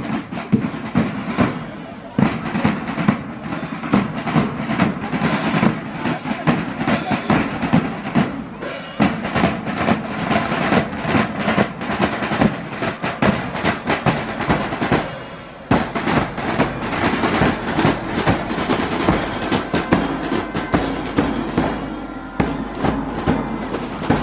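A marching band's drum line, mainly snare drums, plays a steady marching beat, with a brief lull about fifteen seconds in before the beat picks up again.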